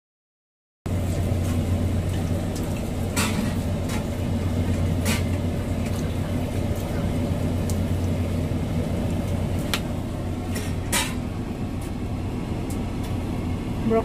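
Kitchen background sound: a steady low hum that starts suddenly about a second in, with a few light sharp clicks and knocks from cookware being handled.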